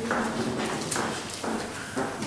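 Footsteps on a hard floor, about two steps a second, over a faint murmur of voices in the hall.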